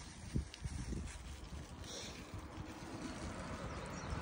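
Outdoor ambience dominated by a low, uneven rumble of wind on the microphone, with a couple of short thumps about half a second in.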